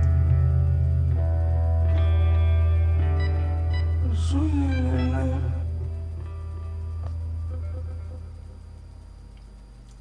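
Live band music at the end of a song: a held low bass note under sustained chords, with a short vocal phrase about four seconds in, all fading out over the last few seconds.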